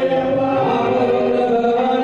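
Several men's voices singing a devotional bhajan together in a chant-like style, holding long notes that shift in pitch.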